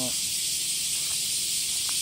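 Cicada chorus in summer trees: a loud, steady, high-pitched shrill hiss that runs on without a break.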